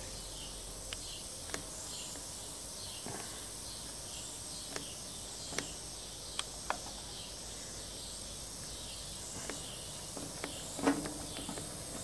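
Steady high insect chirring with scattered light metallic clicks and taps as a hand-held grease fitting clean-out tool is worked against a clogged grease fitting on a steel bulldozer bucket pin. A louder knock comes near the end.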